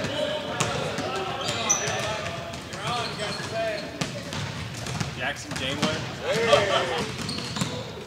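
Basketballs being dribbled on a hardwood gym floor, giving irregular sharp bounces, with players' voices talking in the background.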